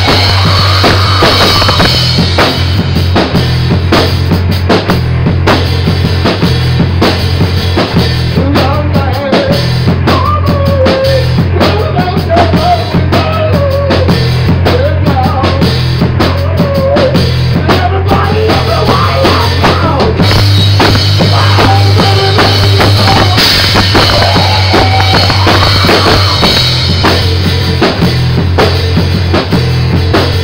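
Drum kit and electric bass playing a loud rock jam together, the drums hitting steadily over a heavy bass line. A higher, wavering melody line comes in for a stretch in the middle.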